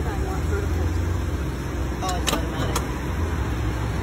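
Low, steady rumble of a taxi idling at the curb, with a few sharp clicks about two seconds in and faint voices.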